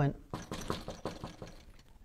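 A quick run of light knocks on a hard surface, standing in for a knock on a door, with the strokes spread over about a second and a half.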